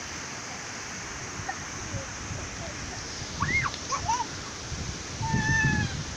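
Steady rush of water running over rocks in a river cascade, with faint high-pitched voices calling in the background, one rising and falling about halfway through and one held near the end.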